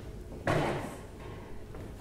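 A short knock or thud about half a second in, under a hesitant spoken "um", followed by quiet room ambience.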